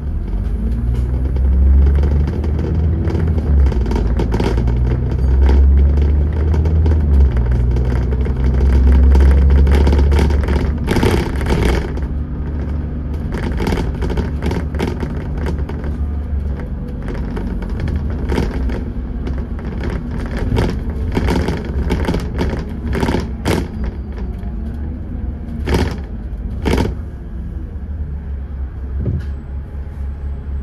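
Dennis Trident 2 double-decker bus with Alexander ALX400 body, heard from inside while under way. Its diesel engine runs with a deep rumble that is heaviest in the first ten seconds, its pitch changing in steps. From about the middle on, many sharp rattles and knocks from the bus body come through over the engine.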